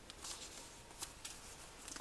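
A square sheet of origami paper being folded and creased by hand: faint rustling with a few short, crisp crackles as the crease is pressed down.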